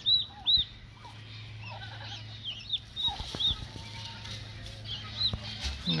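Newly hatched turkey poults peeping: short, high chirps that come irregularly, sometimes a few a second.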